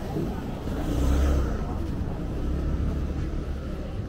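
Large motor scooter's engine pulling away close by: a low rumble that swells about a second in, then eases off.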